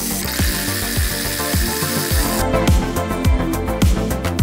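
Background music with a steady beat. Over it, for the first two and a half seconds, the rapid ratcheting of a socket wrench undoing the kart's steering-column bolts, which then stops.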